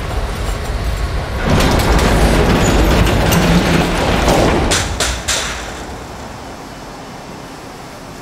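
A heavy metal security gate being hauled open by hand, rattling and rumbling along its track for a few seconds and ending in three sharp metal clanks as it stops.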